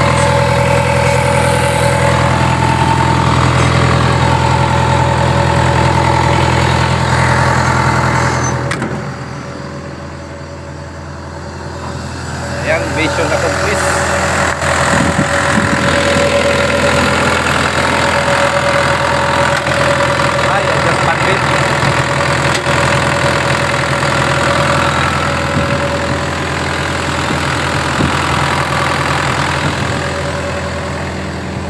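Diesel engine of a Sumitomo long-arm excavator idling steadily. It drops in loudness for a few seconds about a third of the way in, then comes back up at the same steady idle.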